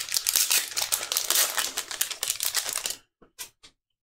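Foil wrapper of a Magic: The Gathering collector booster pack being torn open and crinkled by hand. It makes a dense run of crackling that stops about three seconds in.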